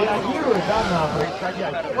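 People talking: speech only, with no other distinct sound.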